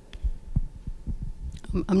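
Handheld microphone handling noise: a run of irregular low thumps and bumps as the microphone is passed and gripped, then a voice begins on it near the end.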